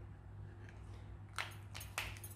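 Steady low room hum, then from about one and a half seconds in a few light clicks and rustles of a plastic Posca paint marker being set down on the table.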